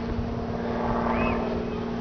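A motor running steadily: a constant hum over a low rumble.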